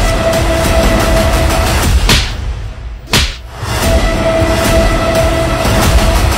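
Edited soundtrack: a loud, steady droning music bed with held tones, broken by two short sweeping effects about two and three seconds in.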